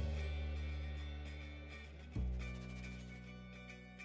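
Background instrumental music: a low chord starts at the outset and rings out, and another is struck about two seconds in, each slowly fading.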